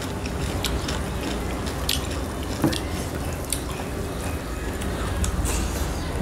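Close-up eating sounds: chewing and wet mouth noises, with fingers working rice on steel plates and scattered small clicks, over a low steady hum.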